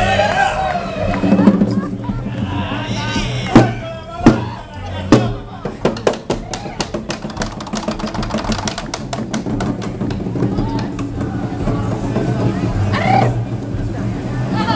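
Snare drums played by stilt performers: three loud single hits about three and a half to five seconds in, then a fast run of strokes lasting several seconds, over a background of voices and music.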